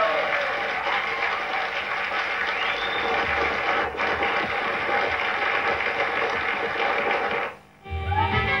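Studio audience applauding at the end of a live song. The applause cuts off abruptly just before the end.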